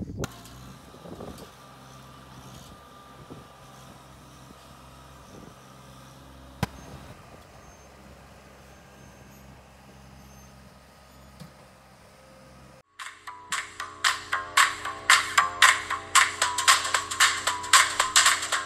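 Compact tractor engine running steadily while its front loader digs and dumps dirt, with a single sharp click partway through. About thirteen seconds in, loud background music with a strong beat cuts in and takes over.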